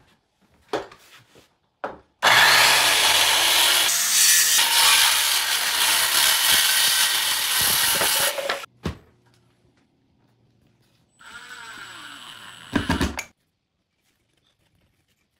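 Corded Bosch circular saw ripping through a pine board, cutting for about six seconds before cutting off. A couple of seconds later a quieter power tool runs briefly and ends in a short, louder burst.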